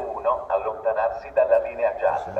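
Station public-address announcement: a voice through the platform loudspeakers, sounding thin and narrow.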